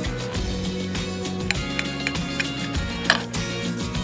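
Background music with steady held notes, with a few light clicks of a steel knife and fork against a ceramic plate as a steak is cut.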